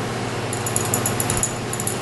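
A thin mixing rod stirring in a glass vessel, making rapid, irregular light ticks against the glass from about half a second in, over a steady low hum.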